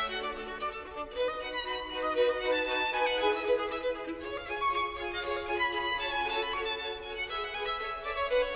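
Instrumental background music with a violin carrying the melody.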